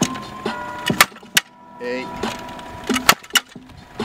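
Sharp slaps of a football being fired from a two-wheel passing machine and caught in gloved hands, several in quick succession, over a steady high whine.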